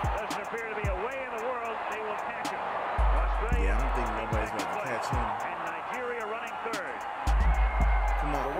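Audio from an old TV broadcast of an athletics race: a man's voice and music-like tones over a steady stadium crowd roar, with a few heavy low thumps.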